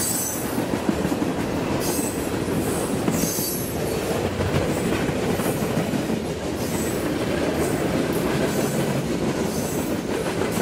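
Freight cars of a mixed manifest train (tank cars, gondolas, covered hoppers) rolling past close by: a steady, loud rumble of steel wheels on the rail, with a high wheel squeal that comes and goes every second or two.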